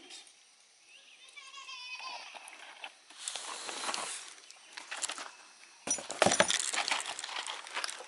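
Rustling and clattering of cardboard packaging and swing set parts being handled, growing louder and busier over the last two seconds. A brief, high, wavering call sounds about a second in.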